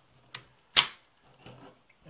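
The bolt of a QB78 Deluxe air rifle being worked open by hand: a light metallic click, then a sharp, louder clack a moment later.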